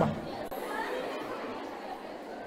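Faint background chatter of a student audience: low, indistinct voices in a pause between the speaker's amplified phrases.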